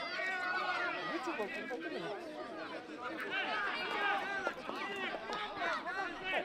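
Several people talking and calling out at once, their voices overlapping into chatter with no one speaker standing out.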